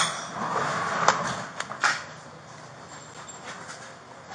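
Rustling and handling noise from gear rubbing close to a body-worn camera's microphone as the officer moves, with two sharp knocks, about a second in and just before two seconds. It quiets down after that.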